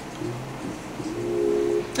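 Soft background music holding sustained, steady chord tones.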